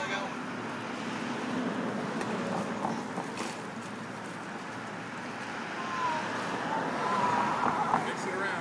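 Steady outdoor street noise with traffic going by, a few faint clicks, and a voice near the end.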